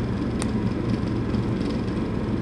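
Steady low background hum and noise, with one faint click about half a second in.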